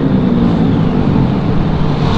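Motorcycle riding at highway speed: steady wind rush on a helmet-mounted microphone, with the bike's engine droning underneath.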